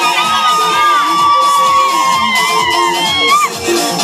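Crowd cheering with long, high-pitched held and gliding cries over dance music with a steady beat; the cries stop a little before the end.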